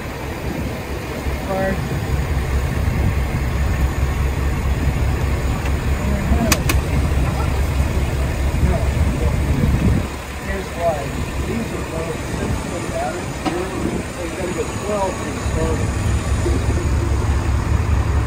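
An engine running with a low, steady rumble, which drops away about ten seconds in and picks up again a few seconds before the end.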